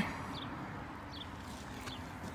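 Faint, steady outdoor background noise with three short, high bird chirps about a second apart.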